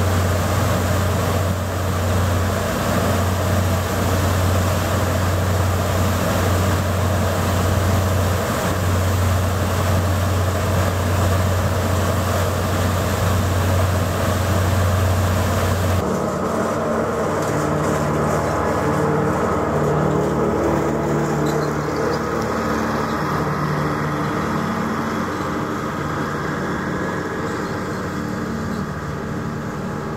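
Passenger ferry's engines droning steadily, heard on board, with wind and rushing water over a strong low hum. About halfway through the sound changes suddenly to a duller engine hum of several steady low tones, with much less hiss.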